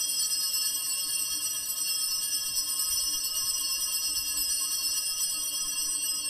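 Altar bells rung without a break at the elevation of the chalice after the consecration: a steady, bright jingling ring that keeps an even level throughout.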